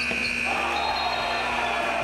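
Gym crowd cheering after a basket at the rim, with a high shrill note held through most of it.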